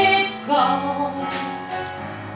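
Show-tune accompaniment with a woman singing: a short falling phrase, then one long held note.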